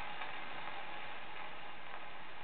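Steady surface hiss of a shellac 78 rpm disc played on a horn gramophone, running on after the song has ended.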